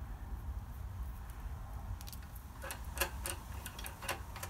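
Light, irregular clicks and taps of small metal parts being handled: a motorcycle rear indicator's threaded stem and nut knocking against its mounting bracket as the indicator is offered up, starting about halfway through, over a low steady hum.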